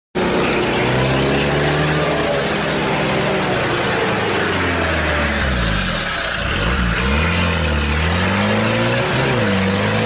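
A 4x4's engine under load as the vehicle wades through deep floodwater, its pitch dipping and rising twice in the second half as the throttle is eased and opened again. Throughout, muddy water rushes and splashes loudly against the body and wheel.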